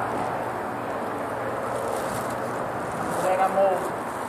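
Steady background noise with a faint low hum at an open tire-shop bay, and a faint voice briefly near the end.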